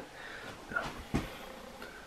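Faint handling sounds of a hot dog in a bread roll being picked up from the counter, with one soft low thump a little over a second in.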